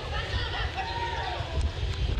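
Live pitch-side sound of an amateur football match: players and onlookers calling and shouting over a steady low rumble. Near the end come a couple of sharp clicks.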